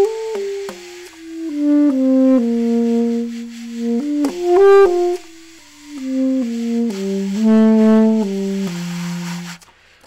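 Saxophone played softly: a slow melody of held notes in two phrases, ending on a low held note. At this low volume the reed barely moves and does not close off the mouthpiece, so the tone is almost pure, with only a couple of harmonics.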